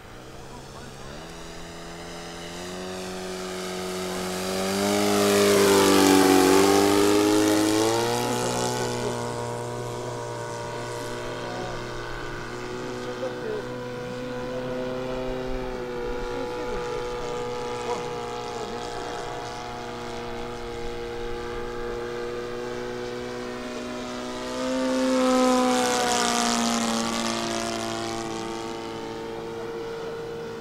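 Radio-controlled scale model de Havilland Chipmunk flying, its engine and propeller droning steadily. It swells into two close fly-bys, about six seconds in and again near the end, and at each one the pitch drops as it passes.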